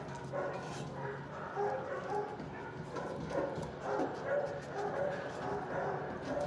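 Several dogs barking and yelping in a shelter kennel, short calls overlapping in a continuous din.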